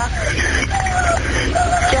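Speech on a recorded 911 phone call: a high voice in short phrases over a steady low rumble of road traffic.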